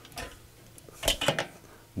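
A few light clinks and knocks of hard objects being handled: one just after the start, then a quick cluster about a second in.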